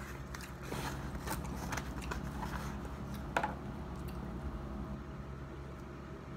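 Paper food wrapper being handled and opened around a chili dog: scattered soft crinkles and rustles, with one sharper click about three and a half seconds in, over a steady low hum.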